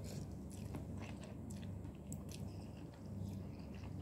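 Close-up mouth sounds of a person eating noodles: chewing and slurping, with many small wet clicks and smacks, over a low steady hum.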